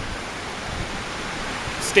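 A steady rushing noise with no clear pattern, cut into near the end by the start of a spoken word.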